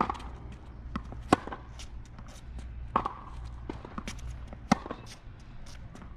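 Tennis rally on a hard court: a racket hits the ball with a sharp pop, answered by the ball bouncing and the far player's return. There are several hits and bounces, the loudest about every three seconds, with shoe scuffs between them.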